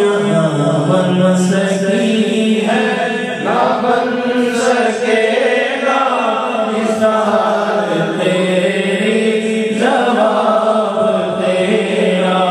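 A man singing a naat, an Islamic devotional poem, into a microphone in long, drawn-out melodic phrases with pitch glides between held notes.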